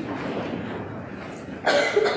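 A person coughing: one short, loud cough near the end, after a stretch of steady room noise.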